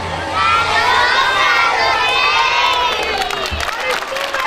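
Crowd of children cheering and shouting together. It starts about a third of a second in and thins out near the end.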